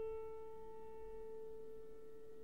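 A single grand piano note left ringing and slowly fading, its upper overtones dying away first.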